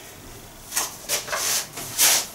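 Cloth rustling as a long dress is handled and shifted on the body, in a few short rubbing bursts during the second half.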